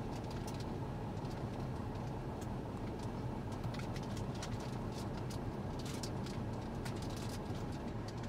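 Steady low rumble inside a car's cabin, from the engine or the air conditioning running, with scattered faint clicks over it.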